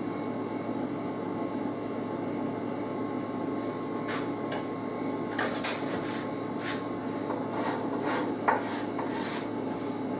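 Hand-shaping strokes on the wooden neck of an archtop mandolin: an abrasive tool rubbing and scraping across the wood in irregular strokes, which grow more distinct from about four seconds in, with one sharper knock near the end. A steady workshop hum runs underneath.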